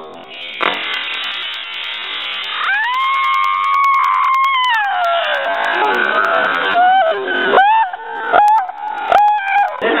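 Model rocket engine firing on a hand-held test stand with a steady rushing hiss, while a person lets out one long high-pitched scream that rises, holds and falls off, about three to five seconds in. Several short high yelps follow near the end.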